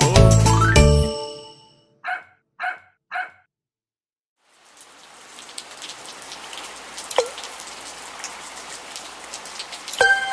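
Music ends in the first second, followed by three short separate notes. After a short silence, a steady patter of falling rain fades in, with a single water-drop plop about seven seconds in.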